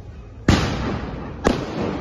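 Two loud, sharp bangs about a second apart, each trailing off over about half a second.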